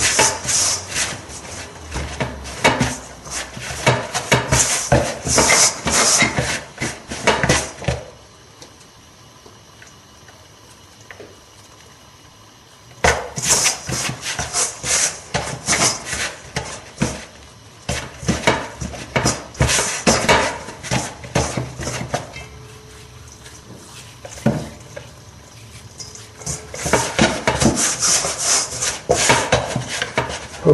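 Hands mixing and kneading wholemeal pizza dough in a glass bowl: quick rubbing and scraping strokes against the bowl. The strokes stop for about five seconds roughly a third of the way in, and ease off again for a few seconds about three-quarters through.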